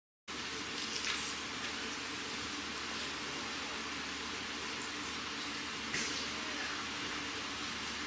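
Steady hiss of room tone with a faint low hum, cutting in just after the start, with two faint clicks, one about a second in and one about six seconds in.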